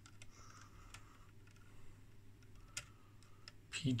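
Faint, scattered small clicks of a hand handling a screwdriver over an oscilloscope's circuit board, over a low steady hum.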